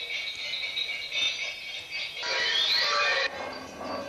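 Experimental sound-art soundtrack of metallic ringing and rattling. About two seconds in it swells louder with a rising whine, then falls back near the end.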